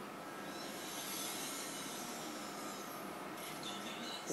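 Soft rustling of a fabric cloth being rolled by hand on a wooden tabletop, over a faint, steady room hum.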